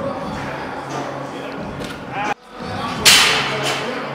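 Gym room noise with a faint hum and a brief faint voice. About three seconds in, just after a sudden cut, comes a loud swish of noise that fades over about a second.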